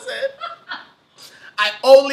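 A man chuckling in short bursts of laughter, with a louder burst of voice near the end.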